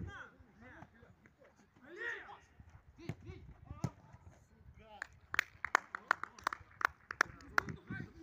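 Distant shouting from players on a football pitch, then, about five seconds in, a run of about eight sharp hand claps, roughly three a second.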